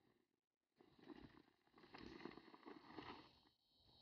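Near silence, with a few faint scuffs around the middle.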